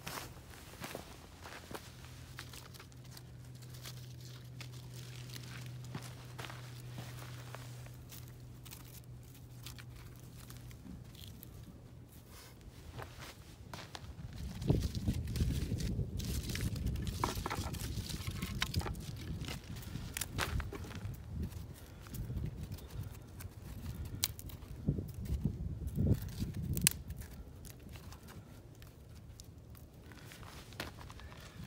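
Footsteps on dry ground and twigs being handled, with scattered clicks and crunches. The steps are louder, with low thuds, from about halfway through until near the end. A faint steady low hum runs under the first half.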